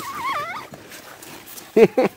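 A dog gives a brief, high, wavering whine while play-fighting with another dog. Near the end a person starts laughing.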